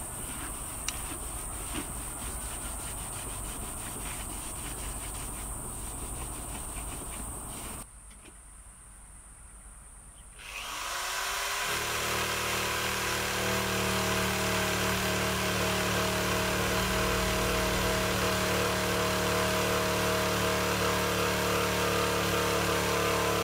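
Soft rubbing and handling sounds with faint clicks for the first several seconds. About halfway through, an electric drill fitted with a wire brush spins up with a rising whine, then runs steadily while stripping old paint and sealant off the caravan's aluminium wall.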